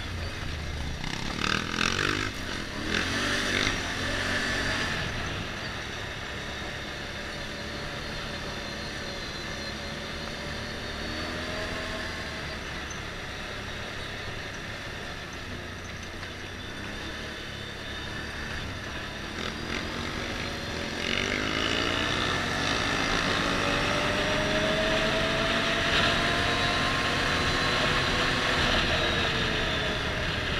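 Motorcycle engine running as it is ridden, its pitch rising and falling with the revs and gear changes, over tyre and wind noise. From about twenty seconds in it gets louder, with the engine note climbing steadily as the bike speeds up.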